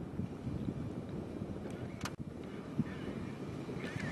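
Wind rumbling on an outdoor microphone, with a single short click about two seconds in.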